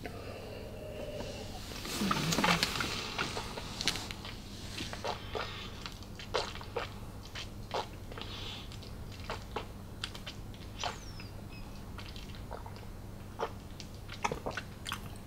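A sip of whisky and swishing it around the mouth, loudest about two seconds in, followed by a run of faint lip smacks and tongue clicks as it is tasted. A steady low electrical hum sits underneath.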